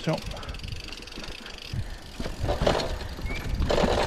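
Mountain bike rolling along a dirt and stone forest singletrack: tyres on the trail with rattles from the bike, and louder rough patches about halfway through and near the end.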